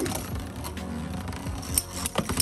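Two metal-wheeled Beyblade spinning tops whirring steadily as they circle a clear plastic stadium just after launch. A few sharp clicks come as they touch.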